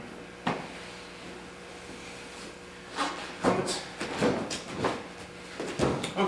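Thuds and rustling of bodies and cotton gis moving on a padded mat: one sharp knock about half a second in, then a run of short thumps and shuffles over the last three seconds.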